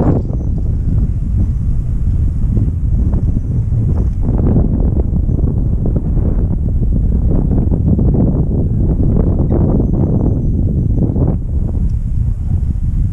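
Wind buffeting a camera microphone: loud, low, unsteady noise throughout.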